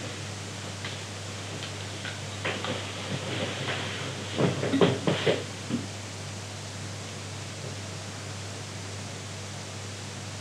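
Room tone: a steady low hum with faint hiss, and a few faint brief sounds around four to five seconds in.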